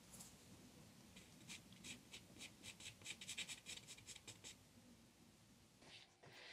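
Faint, quick scratching strokes of a pastel stick on paper, a run of about a dozen short strokes that thickens in the middle and dies away well before the end.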